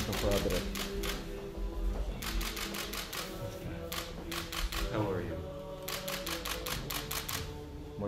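Press photographers' camera shutters firing in rapid bursts of about eight to ten clicks a second, several bursts in a row, over soft background music and low voices.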